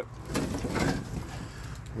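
Rustling and scuffing of a person squeezing in through the doorway of a derelict, rusted-out car, loudest in the first second, over a low steady rumble.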